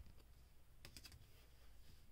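Near silence, with a few faint, short clicks about a second in, from hard plastic trading-card cases being handled.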